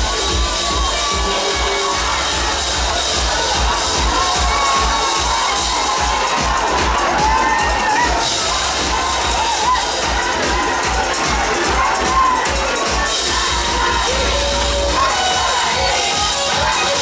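A crowd cheering and shouting loudly over live trot music, with a drum kit being played, its cymbals and drums beating steadily through the mix.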